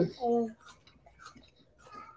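A short hummed "mm" from a voice in the first half-second, then quiet but for a few faint clicks of forks and eating at the table.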